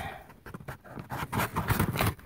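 Cardboard shipping box being cut open with a knife: irregular scratching, scraping and rustling of the blade and hands on the cardboard.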